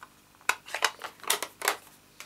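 Several sharp, light clicks and taps, about five in little more than a second, from plastic craft supplies such as an ink pad and stamp being handled and set down on a desk.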